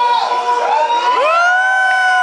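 A group of voices singing together, sliding up about a second in to a long held note that falls away at the end of the song.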